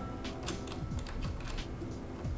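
A run of small, irregular clicks and taps as metal camera-rig parts, a mount on the top handle, are fitted and turned by hand, over background music.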